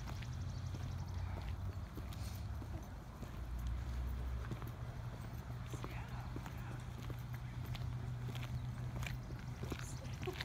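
Footsteps on pavement and a concrete driveway: irregular hard taps over a steady low hum.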